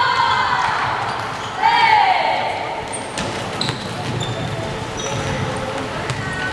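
Volleyball players shouting together, two loud calls in the first two seconds, followed by scattered sneaker squeaks and ball thuds on a wooden sports-hall floor.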